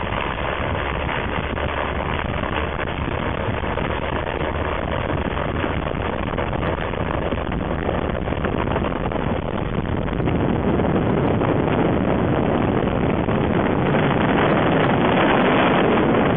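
Steady rush of wind on the microphone mixed with the engine drone of a single-engine floatplane at takeoff power, as it is towed at speed on a trailer down a runway. The noise grows slightly louder over the last several seconds as the plane lifts off.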